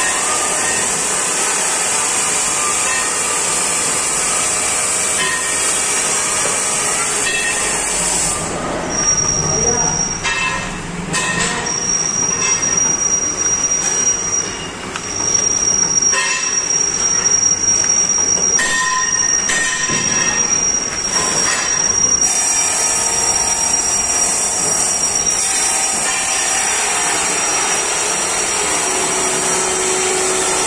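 A high-speed paper dona (bowl) making machine running continuously, its press die working through foil-laminated paper with a steady metallic clatter and hiss. A thin, steady high whine comes in for a stretch in the middle.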